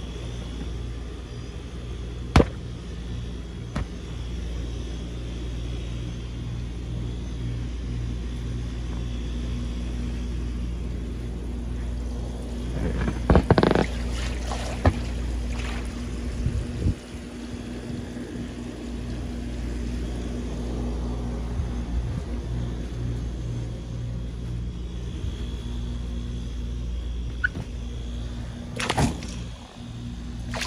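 Water running into an inflatable paddling pool, a steady low rumble of churning water, with a few sharp knocks about two seconds in, a louder cluster in the middle and more near the end.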